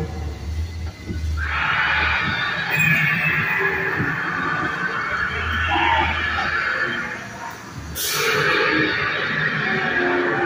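Recorded animal roars and screeches played as dinosaur-ride sound effects, over a low rumble. A sharper, hissing sound starts suddenly about eight seconds in.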